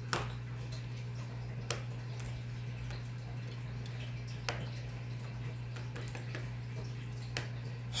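Four light clicks, seconds apart, of a small plastic toy figurine being tapped down on a hard surface as it is made to hop along, over a steady low hum.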